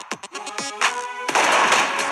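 Action-soundtrack music over a rapid run of sharp hits, giving way a little over a second in to a loud, broad rushing noise.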